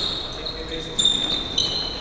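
Basketball sneakers squeaking on a hardwood gym floor during play: short high squeaks, a cluster about a second in and another near the end, over the general hubbub of the gym.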